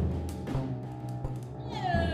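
Free-improvised ensemble music: a drum stroke at the start over a low held tone with scattered percussion clicks. Near the end a high, meow-like falling glide begins.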